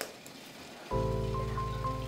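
A short hush with a faint hiss, then soft background music comes in about a second in: a sustained chord of steady held notes.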